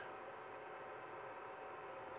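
Faint steady hiss and light hum from a powered-on Creality Ender 5 Plus 3D printer sitting idle with its fans running.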